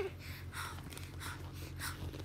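A woman's brief laugh, then several short breathy puffs of breath about every half second.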